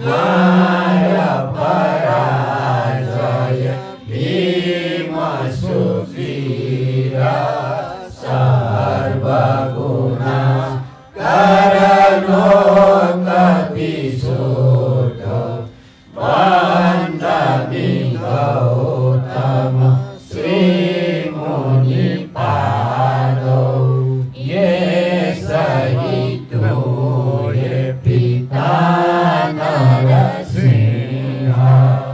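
Buddhist devotional chanting, sung in phrases of a few seconds each with short breaks between them.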